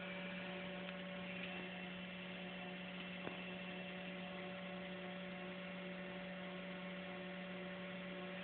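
Steady electrical hum with a low tone and evenly spaced higher overtones, unchanging throughout, with one faint click about three seconds in.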